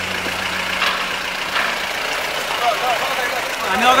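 A vehicle's engine idling with a steady, noisy hum, faint voices behind it, and a man starting to speak near the end.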